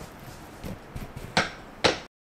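Two plates set down on a kitchen counter: two sharp clinks about half a second apart in the second half, after a few softer knocks.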